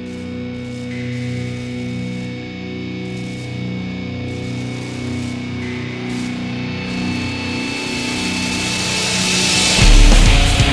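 Slow-building intro of a melodic death metal song: layered sustained notes held over a low drone, growing gradually louder, with a rising hiss in the high end swelling over the last few seconds toward the full band's entry.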